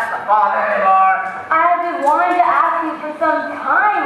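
Speech only: a man's voice delivering stage lines, picked up from the audience in a school auditorium.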